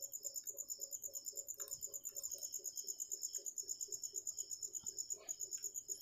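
Faint, steady train of high-pitched chirping pulses, about eight a second, like an insect trilling in the background.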